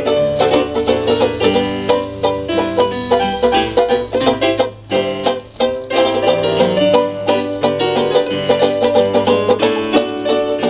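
A banjo and a digital piano playing a bluesy tune together, with quick plucked banjo notes over piano chords and a bass line. The playing softens briefly about halfway through.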